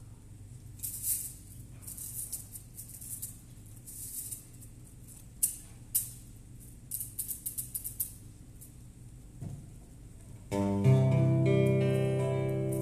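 A hand-held percussion shaker rattled in short, scattered bursts, then an acoustic guitar strummed, one chord ringing out loudly about ten and a half seconds in as a gospel song begins.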